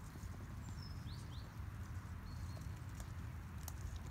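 Wild garlic leaves being plucked by hand among woodland ground plants: faint rustling and soft snaps over a low steady rumble, with a couple of short high bird chirps about a second in.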